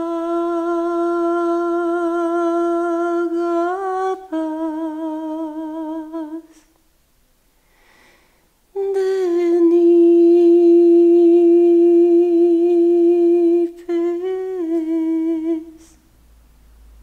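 A single voice humming long, steady held notes. A short slide up and back near four seconds, a pause of about two seconds in the middle, then another long held note that steps up briefly and back down before stopping near the end.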